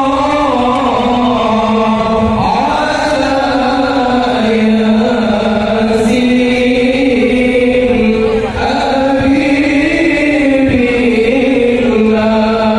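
Shalawat, Islamic devotional chanting in praise of the Prophet, sung in long held notes that glide slowly from one pitch to the next.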